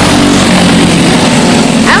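Several Briggs & Stratton LO206 four-stroke single-cylinder kart engines running on track, loud and steady, their engine note dropping about half a second in.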